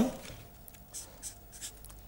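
Felt-tip marker writing on paper: a few faint, short strokes as it draws a double downward arrow.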